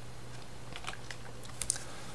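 A handful of faint computer clicks, clustered about a second in, over a low steady hum.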